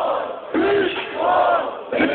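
Concert crowd shouting a chant together, one long shouted phrase after a short break about half a second in.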